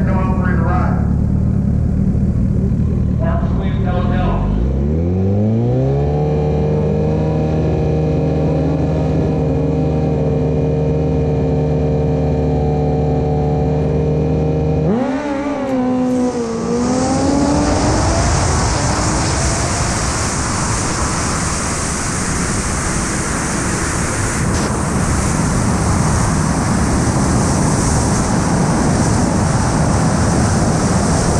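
A sport bike's four-cylinder engine at a drag strip start line idles, then its revs climb and hold steady for about nine seconds. About halfway through it launches and pulls hard up through the gears. Loud wind rush on the microphone soon buries it and lasts to the end.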